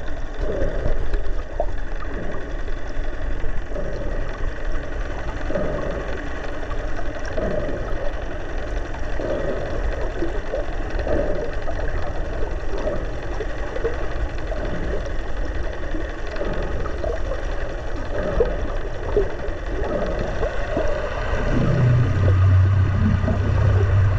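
Underwater sound picked up by a submerged camera: a muffled, steady wash of water with faint steady tones and irregular short swishes, and a low drone coming in a couple of seconds before the end.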